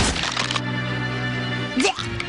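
Cartoon background score with held low tones, opened by a sharp crack sound effect. Near the end comes a short rising snarl from the animated cat.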